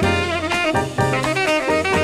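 Small-group jazz recording playing: a saxophone melody over low bass notes and drums.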